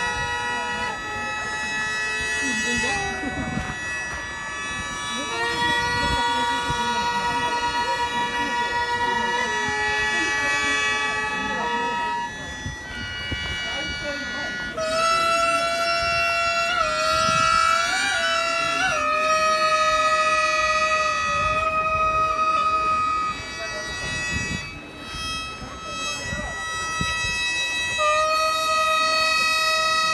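Gagaku court music played live on Japanese reed and wind instruments: long held reedy tones, several pitches sounding together. About halfway through, one line slides and bends in pitch.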